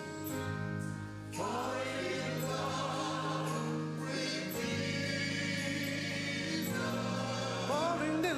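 Gospel choir singing with vibrato over sustained electric keyboard chords. The voices come in strongly about a second and a half in, over a steady held chord.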